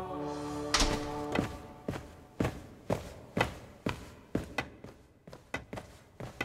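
Cartoon footsteps, about two a second, knocking and echoing in a large room, slowly getting quieter as the walker crosses the floor. Held music notes fade out in the first second.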